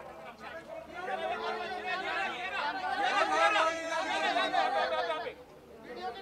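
Many people shouting at once, the overlapping calls of a pack of red-carpet photographers directing a posing celebrity. The jumble of voices swells through the middle and drops off about five seconds in.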